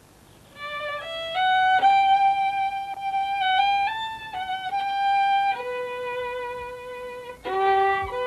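A handmade violin being tried out by its maker: a slow bowed melody of long held notes stepping up and down in pitch, starting about half a second in. The bow breaks off briefly near the end and the playing picks up again.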